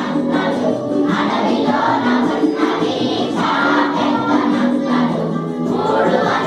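A large group of children singing a Telugu action song together in unison.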